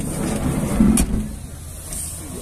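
Daewoo Damas minivan's sliding side door being pulled shut, rumbling along its track and closing with one sharp clack about a second in.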